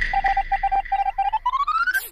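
Electronic sound effect laid over the video: a run of short, even beeps over a held high tone and a low drone, ending in a tone that rises steadily in pitch.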